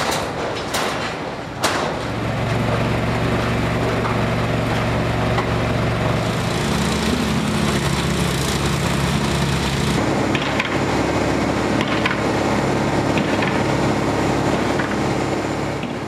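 A concrete mixer truck's engine running steadily and loudly, after three sharp knocks in the first two seconds.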